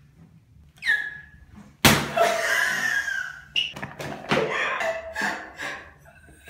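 One loud, sharp smack about two seconds in, followed by excited yelling and laughter in a small tiled room.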